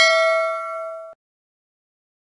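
A bell-like ding sound effect from a subscribe-button animation, ringing with several clear tones and fading, then cut off abruptly about a second in.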